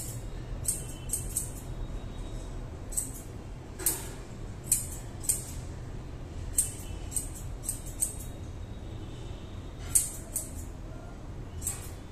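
Scissors snipping through a dog's long coat: short, crisp snips, often two or three in quick succession, coming irregularly, over a low steady background hum.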